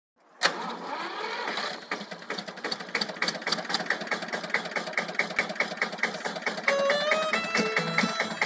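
Vintage tractor engine starting up about half a second in, running harder briefly, then settling into an idle with a rapid, even knocking rhythm. About seven seconds in, a violin starts playing over the running engine.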